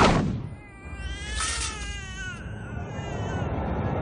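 A high-pitched cry that wavers up and down in pitch for about two seconds, starting just under a second in, followed by a steady low background rumble.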